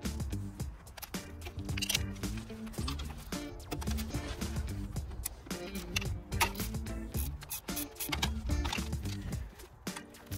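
Background music with a beat and a bass line.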